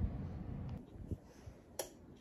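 Faint handling sounds, with a single sharp click near the end.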